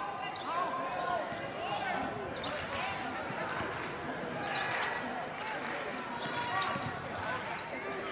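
Basketball being dribbled on a hardwood court in a large gym, with scattered voices from a sparse crowd.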